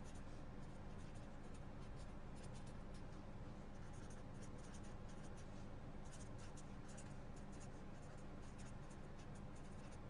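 Marker pen writing on paper: faint, short scratchy strokes, stopping and starting as the words are written out, over a steady low hum.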